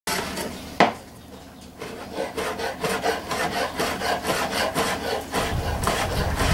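A chef's knife cutting through bacon on a plastic cutting board: a sharp knock of the blade on the board just under a second in, then rapid rasping strokes about four a second. Wind rumble comes in near the end.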